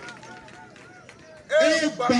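A man's voice over a microphone, starting loudly about one and a half seconds in, after a quieter stretch of faint background voices.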